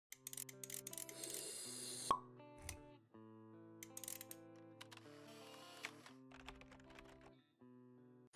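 Short logo intro jingle: soft, sustained synth notes with plopping and clicking sound effects. A hissing swell ends in a sharp hit about two seconds in.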